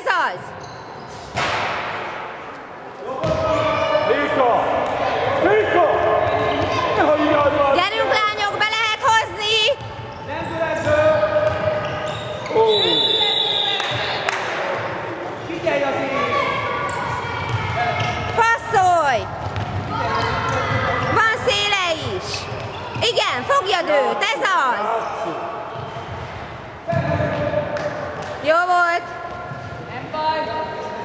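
A handball bouncing on a wooden sports-hall floor during play, with players' and spectators' voices calling out throughout, echoing in the large hall.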